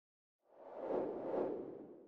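Whoosh transition sound effect: a rushing swell that starts about half a second in, peaks twice and fades away.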